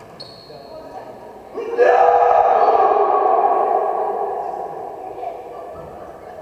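Players' voices rising suddenly into a shout or cheer about two seconds in, loud for a couple of seconds, then fading, with the echo of a large sports hall.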